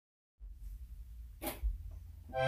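Faint low steady hum starting about a third of a second in, with one short burst of hiss-like noise about one and a half seconds in and a dull low thump just after it.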